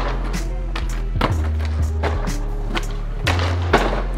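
Skateboard sliding down a concrete ledge in a noseblunt slide, over backing music with a steady bass line.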